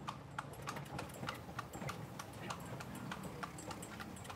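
Faint, irregular clicks and taps, about three or four a second, over a low background hum.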